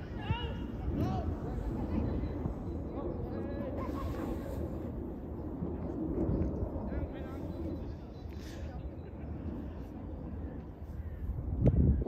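Faint, indistinct voices of players and spectators calling out across an outdoor football pitch, over a steady low rumble. A louder burst of noise comes just before the end.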